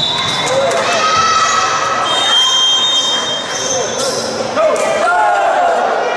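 Echoing sports-hall din: boys' voices calling out, a volleyball bouncing on the hardwood floor, and two held high tones, the second about two seconds in.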